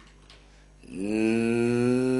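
A low-pitched voice holding one long, steady vowel sound, like a drawn-out hesitation before speaking, starting about a second in.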